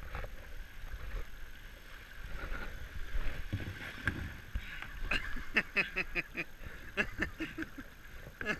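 River water running over a rocky ledge, a steady rush, with voices calling out from about five seconds in.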